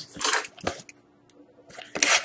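Handling noise of a sealed cardboard trading-card box being picked up and turned over: short rustles at the start and near the end, a single soft knock about two-thirds of a second in, and a brief quiet gap between.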